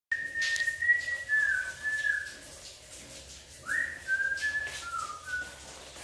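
A person whistling a short tune in two phrases of held notes that step up and down. The second phrase starts about three and a half seconds in with a quick upward slide.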